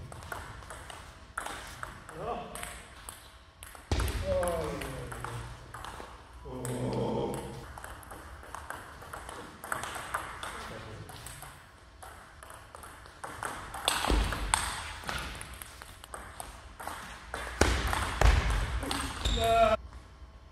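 Table tennis rallies: the ball clicks sharply off the bats and the table in quick exchanges, point after point. Short bursts of voices come between the rallies.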